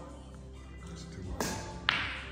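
Two sharp clacks of a pool shot, about half a second apart, over faint background music.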